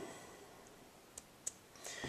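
Two faint, short clicks about a third of a second apart over quiet room tone: a computer button being pressed to advance the slide.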